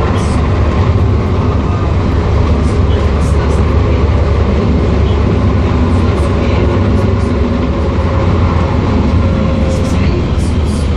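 Cabin running noise of a Vienna U6 Type T1 train travelling at speed: a steady, even rumble of the wheels on the track, heaviest in the low end, with a few faint ticks.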